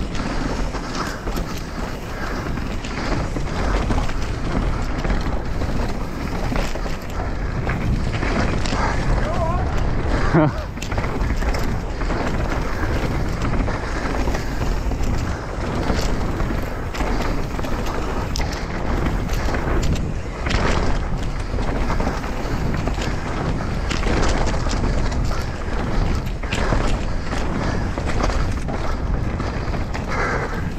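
Mountain bike descending a dirt and rock trail, heard from a camera on the rider: a steady rush of wind on the microphone and tyres rolling on dirt, with frequent rattles and knocks from the bike over rough ground and one harder knock about ten seconds in.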